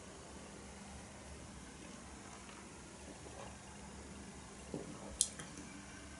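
Quiet sipping and swallowing of beer from a stemmed glass over a faint steady hum. About five seconds in there is a light, sharp knock as the glass is set down on the cloth-covered table.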